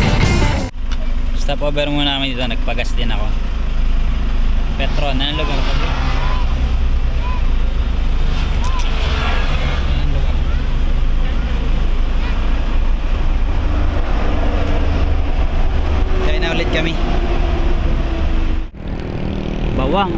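Voices talking at intervals over a steady low rumble, with a sudden change of sound a little under a second in and again near the end.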